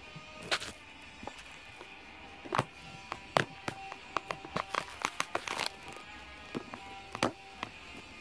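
Loose plastic Lego pieces clicking and clattering irregularly as they are sorted by hand, busiest in the middle, over quiet guitar music.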